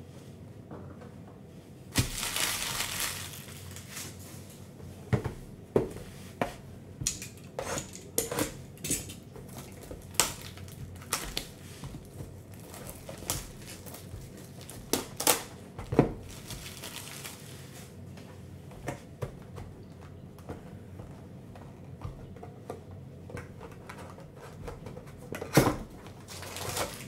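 Foil pack wrappers crinkling in a noisy burst about two seconds in, then cellophane shrink wrap being torn and peeled off a trading-card box in a run of sharp crackles and snaps that thin out toward the end.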